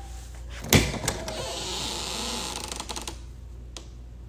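A door's knob latch clicking sharply as it is turned, then about two seconds of rushing, scraping noise with small clicks as the door is pulled open.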